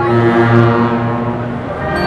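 Brass band playing a processional funeral march: a low brass chord is held for most of two seconds and fades, and the band comes back in with a fuller chord at the end.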